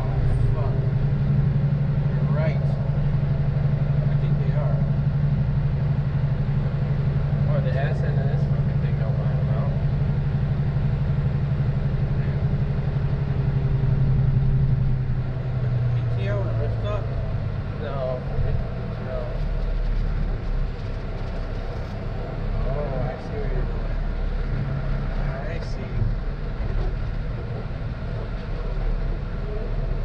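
Heavy rotator wrecker's diesel engine droning steadily in the cab while pulling a coach bus in tow. About halfway through, the engine note falls away to a lower, quieter hum as the truck eases off.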